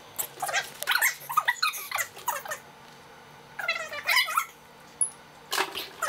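High-pitched children's voices in short, pitch-bending bursts, with a quiet stretch in the middle.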